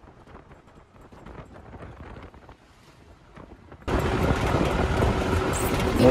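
Low, even road and wind noise from inside a moving car. About four seconds in, it gives way abruptly to much louder, dense outdoor noise.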